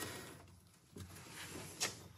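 Faint handling noises of a plastic seat rail cover being slid in at an angle and fitted along the seat rail, with one short scrape near the end.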